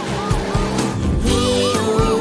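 Upbeat children's background music, with a cartoon sound effect of a car speeding off: a noisy tyre screech through about the first second.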